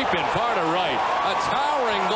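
A man's voice, the broadcast announcer calling the home run, over steady stadium crowd noise.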